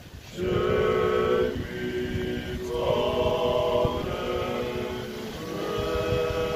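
Male vocal ensemble singing unaccompanied Georgian polyphony, several voices holding long chords. There is a brief break right at the start, then the chords shift about every one to three seconds.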